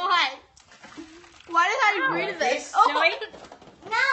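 Children's voices talking and exclaiming, with a short lull of faint noise about half a second in before the voices return.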